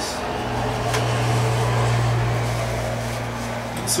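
A steady low mechanical hum that swells slightly toward the middle and eases back, with one faint click about a second in.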